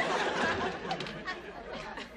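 Studio audience laughter dying away.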